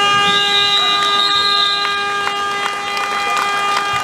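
Gym scoreboard buzzer sounding one long, steady blast of about four seconds, signalling the end of the game.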